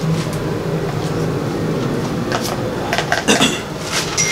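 Bible pages being turned and handled, paper rustling with a few sharper crackles about three seconds in, over a steady low hum.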